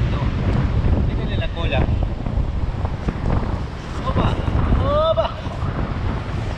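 Wind buffeting the microphone: a steady low rumble, with brief snatches of voices.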